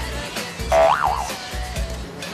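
Background music with a steady beat, and about a second in a short comic sound effect: a pitched tone that swoops up, drops and wobbles before fading.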